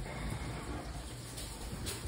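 Quiet room noise with faint handling sounds, and a small click near the end.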